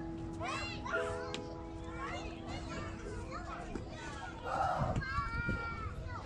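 Children's voices calling and squealing, with a louder drawn-out call near the end, over sustained notes of music in the first half.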